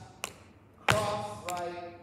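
Sneakered feet striking a stage floor during dance steps: three sharp footfalls, the second and third with a ringing tail that echoes in the large hall.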